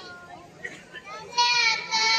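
A young girl's high-pitched voice singing into a stage microphone, coming in loud about one and a half seconds in after a quieter stretch.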